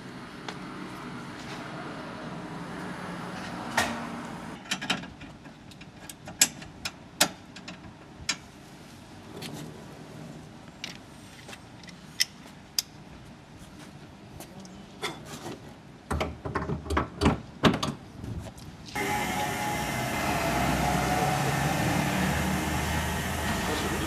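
Scattered sharp clicks and knocks from a compressed-air filling hose and its coupling being handled at an air car's refill port. About 19 s in, the sound changes abruptly to a steady, louder noise.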